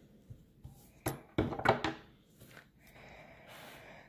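Handling of metal dog nail clippers with plastic grips: a few short clicks and knocks in the first two seconds as they are worked and put down, then a faint rustle near the end.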